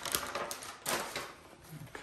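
Rustling and crinkling of a blue sterile kit wrap being unfolded by hand, with irregular sharp crackles, dropping quieter shortly before the end.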